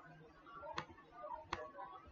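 Two sharp clicks from working a computer, about three-quarters of a second apart, over faint room sound.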